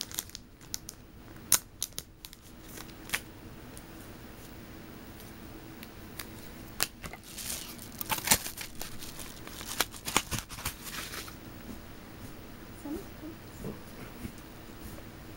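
Packaging being cut and torn open by hand: a few sharp snips and clicks, then a stretch of paper and plastic tearing and crinkling about halfway through.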